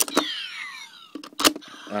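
Plastic clicks from the toy transformation belt's folding slots being worked, each followed by electronic sound effects from its speaker: sweeping tones that fall in pitch. There is a click at the start and another about a second and a half in.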